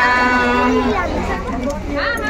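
Women singing a traditional Adivasi song, one long note held steady that ends about a second in, then the singing moves on in shorter phrases.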